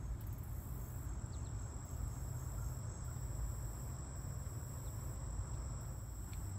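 Insects trilling steadily at a high pitch in the marsh grass, over a low rumble of wind on the microphone.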